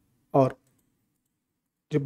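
A single short spoken word, then near silence: room tone.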